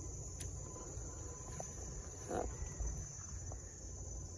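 Steady high-pitched insect chirring, with a faint sharp click about half a second in.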